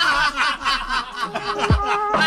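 People laughing for the first second or so. Music comes in about halfway through, with held notes and a deep beat that lands near the end.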